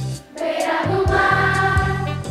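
Children's choir singing with a Brazilian jazz trio's bass and drums behind it; the music drops away for a moment just after the start, then the voices and band come back in.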